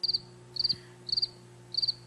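Cricket chirping: four short, high trilled chirps about half a second apart, over a faint low hum that starts with them.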